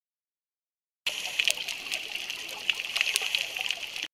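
Underwater ambience: a steady hiss sprinkled with sharp clicks and crackles, starting suddenly about a second in after silence.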